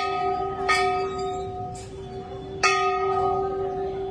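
Hindu temple bell struck by hand three times: once at the start, again under a second later, and again near three seconds in. Its tone rings on steadily between strokes.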